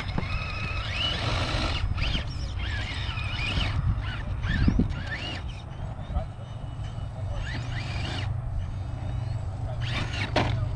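Electric RC rock crawler's motor and geartrain whining in short bursts of throttle, the pitch rising and falling as it works slowly over rocks, over a steady low rumble.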